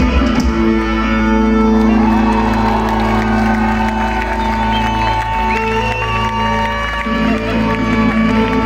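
Live amplified folk-rock band playing a Thracian zonaradikos dance tune, with long held notes and a winding melody line over a steady bass, heard from among the audience.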